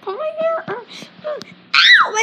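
A child's voice wailing and whining without words, ending in a loud high cry that falls in pitch.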